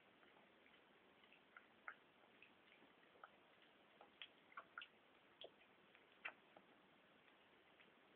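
Faint, irregular little clicks and smacks of a kitten eating wet cat food from a plate, coming thickest around the middle.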